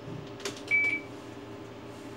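Ultrasound machine console: a key click, then one short high beep acknowledging the key press, over a steady low hum.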